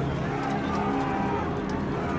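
Dense battle soundtrack: a low sustained drone whose notes change in steps, with men's cries gliding up and down over a noisy rumble of fighting.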